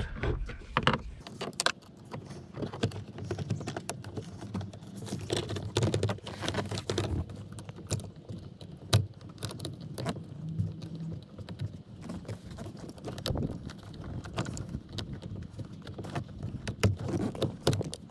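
Irregular small clicks and scrapes of a flat-tip screwdriver working at the black plastic locking clip on a seatbelt's electrical connector.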